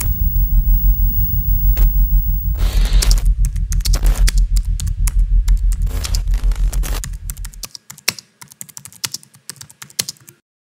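Rapid computer keyboard typing clicks, in quick irregular runs, timed to credit text typed onto the screen. A deep low rumble runs underneath and stops abruptly about three-quarters of the way through, leaving the typing sparser and on its own.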